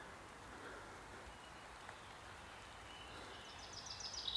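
Faint woodland ambience, with a small bird giving a quick run of short, high chirps near the end.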